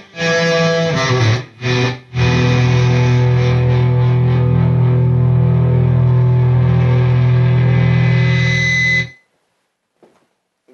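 Electric guitar played through a Headrush Pedalboard amp-and-effects modeller on its "Stadium Rock" preset: a few short chords, then one long chord left to ring for about seven seconds before it cuts off suddenly near the end.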